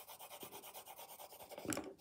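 Graphite pencil shading on paper with quick, light back-and-forth strokes, faint and scratchy: the pencil is held flat in a side grip with ever lighter pressure to grade the shading from dark to light.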